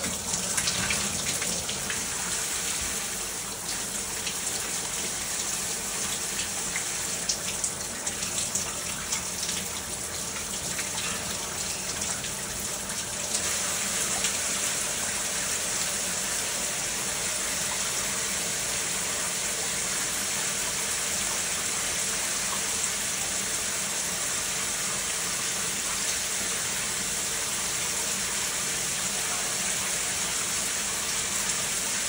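Cold water pouring from an overhead rain shower head, the spray splashing on a person's body and the tiled floor. The spatter is uneven for the first dozen seconds or so, then runs steady and a little louder from about halfway through.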